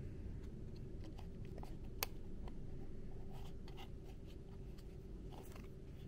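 Faint handling of cardboard game pieces: soft scratches and light clicks as a punched-card boat is fitted together, with one sharper click about two seconds in.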